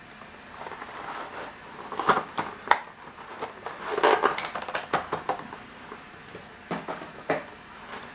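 A boxed model airliner being unpacked by hand: the box and packaging are handled, with scattered clicks, knocks and rustling.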